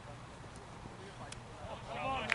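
Quiet open-air background at a cricket ground with two faint knocks, then players' voices calling out near the end.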